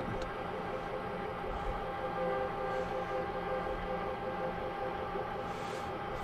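Manual metal lathe running steadily, its motor and gear train giving an even hum with several constant tones, while the cross-slide power feed is being engaged and fails to catch; the instructor suspects something is out of adjustment.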